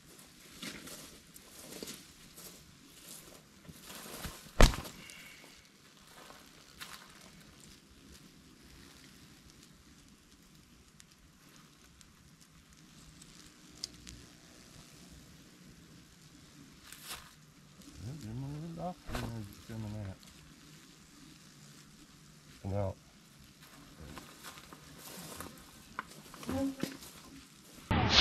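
Wasps stirred up after their nest in an old trailer was doused with diesel: a faint crackling hiss, a sharp click about four and a half seconds in, and around eighteen seconds in a buzz that rises and falls in pitch as one flies past close by.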